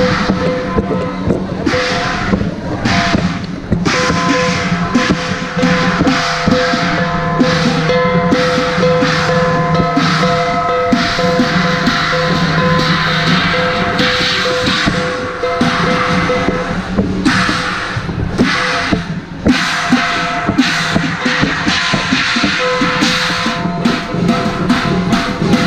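Chinese qilin and lion dance percussion band of drums, gongs and cymbals beaten together in a steady, dense rhythm. Metallic ringing tones are held under the strokes.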